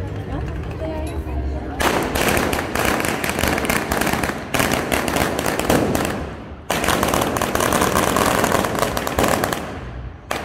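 A long string of firecrackers going off in rapid, continuous crackling, starting about two seconds in and running in three stretches with two brief breaks, with voices before it starts.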